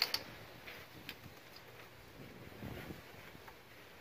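Three-pin plastic electrical connector being pushed onto a fuel rail sensor: one sharp click at the start, a smaller click about a second in, then faint ticks and rustle of hands working the connector and wiring.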